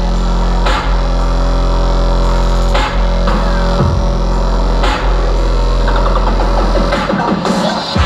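Loud electronic bass music from a live DJ set played over a hall's PA, heard from within the crowd: a heavy sustained bass line with strong hits about once a second. The deepest bass drops out about seven seconds in.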